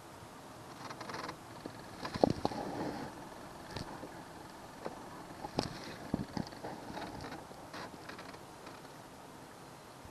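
A small plastic boat under way, with a faint steady hum under irregular knocks and creaks from the hull and the gear aboard; the loudest knock comes about two seconds in, and a cluster of knocks comes around the middle.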